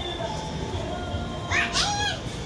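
A young child's short, high-pitched squeal about one and a half seconds in, over steady background music.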